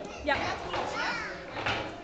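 Voices in a gym hall: a woman says "ja" and young children's voices call out in short bursts, ringing in the large room.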